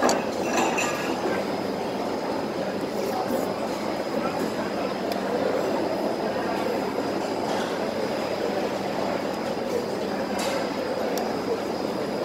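Steady hawker-centre background din: a wash of distant chatter and ventilation noise, with a few light clinks of a metal spoon against a bowl.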